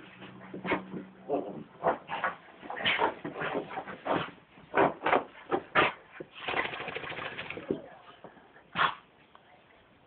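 A freshly bathed Lhasa Apso making a quick, irregular run of short dog noises and scuffles as it dashes about and rubs itself on the carpet. The noises stop about a second before the end.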